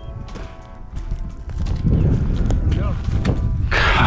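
Dry grass and brush crunching and rustling as a person pushes through it with a landing net. It gets louder and busier about two seconds in, with many sharp crackles over a low rumble.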